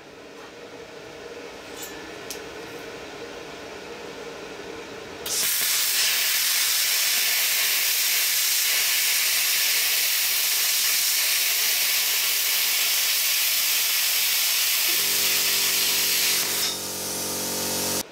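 Air plasma cutter cutting through 5 mm steel plate at 50 amps on 220 volts. A low machine hum comes first. About five seconds in the arc starts with a loud, steady hiss that lasts about eleven seconds, then stops, leaving a softer air hiss near the end.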